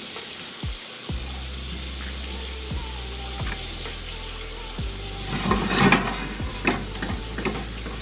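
Steady sizzle of food frying in a pan, with a cluster of sharp clicks and taps about five to six seconds in as eggs are cracked into a mixing bowl. Background music with a low bass runs underneath.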